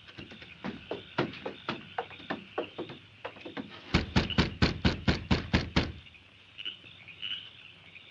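Radio-drama sound effects of footsteps walking up to a door, followed about four seconds in by a quick run of about a dozen louder knocks over two seconds.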